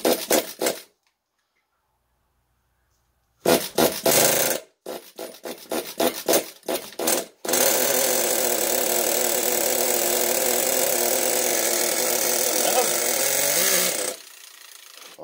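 The two-stroke glow engine of an RC10GT nitro truck, run on gasoline through a specialty glow plug. Short irregular sputtering bursts as it is started, then about halfway through it catches and runs steadily at one even pitch, still far from tuned.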